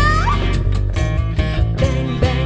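Acoustic band playing: a sung note slides upward at the start over acoustic guitar, upright bass and cajon beats.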